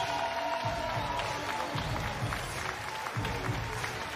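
Arena crowd noise and applause under background music, with a held note fading in the first second or so and a few low beats later on.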